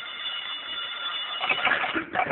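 Telephone bell ringing as a radio sound effect: one continuous ring that stops shortly before the end.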